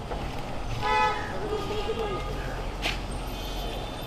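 A vehicle horn toots once, briefly, about a second in, over a steady low rumble of street traffic.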